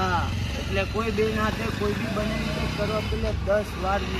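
Men's voices talking animatedly, over a steady low rumble.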